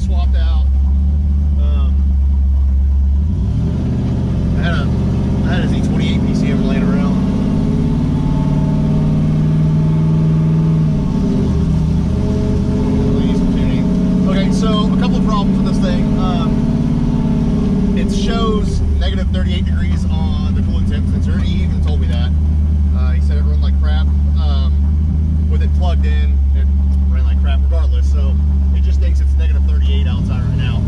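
Cammed 5.3 L V8 (BTR Stage 4 truck cam, headers) of an LS-swapped pickup running under way, heard from inside the cab, its pitch changing several times as it drives and shifts through the 4L80E's gears.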